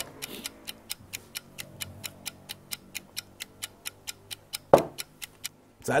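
Ticking clock sound effect: a fast, even ticking, a countdown marking time for the viewer to think, over a faint low sustained music bed. A brief louder rush of noise comes near the end, and the ticking stops just after it.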